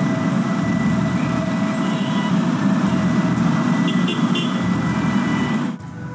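Heavy road traffic running steadily, with the low rumble of bus, truck and car engines. A brief high squeal comes about one and a half seconds in.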